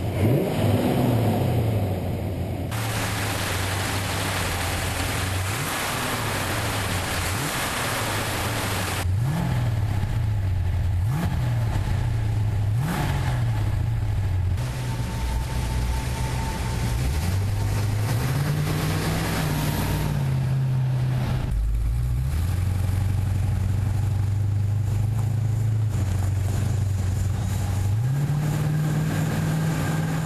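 A 1971 Plymouth Road Runner's V8 engine runs as the car is driven. The engine is revved up and let back down several times about a third of the way through. Then it holds a steady rumble and rises in pitch again near the end.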